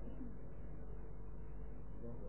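Faint background of an old, narrow-band recording: a steady low hum with soft, indistinct low sounds. It sits in a pause between recited phrases.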